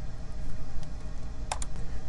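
Steady low hum of room noise, with two quick clicks close together about one and a half seconds in.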